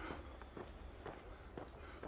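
Faint footsteps on a paved trail, a few irregular soft steps over a low steady rumble.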